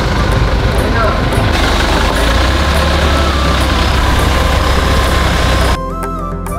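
Minibus van's engine running amid a dense wash of voices and street noise. The sound starts abruptly and cuts off shortly before the end.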